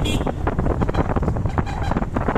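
Motorcycle riding over a rough, badly built road: wind buffeting the microphone, with a low rumble and rapid, uneven rattling knocks from the bumps.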